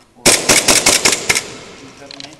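Airsoft gun firing a rapid string of about ten shots close to the microphone, starting about a quarter second in and lasting about a second, the sound trailing off after the last shot.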